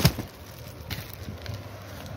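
A sharp thump at the start and a fainter knock about a second in, from bolts of plastic-wrapped fabric being handled and set down on a tiled floor.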